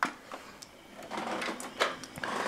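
A sharp click as the power key on the keyboard is pressed, then the Power Macintosh 7100/66 powering up: a faint mechanical whir of its fan and hard drive starting.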